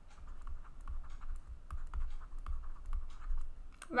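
A digital pen tapping and scratching on a writing tablet while someone writes by hand: a run of small, irregular clicks.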